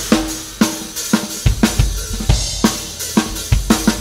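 Rock drum kit playing a break with the rest of the band dropped out: snare and bass-drum hits with cymbals and hi-hat. A low bass comes in underneath about a second and a half in.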